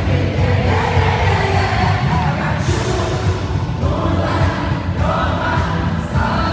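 Live pop song played loud over an arena sound system, recorded from among the audience: a heavy, steady bass beat with singing over it.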